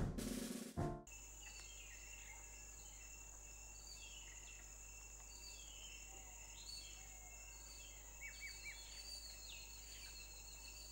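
Faint outdoor ambience of birds chirping in repeated short calls over a steady high insect buzz. It follows a music sting that fades out within the first second.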